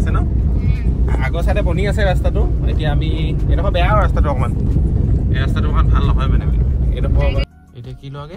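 Car cabin on a rough dirt road: a loud, steady low rumble from the car and its tyres, with a singing voice over it. The rumble stops abruptly near the end.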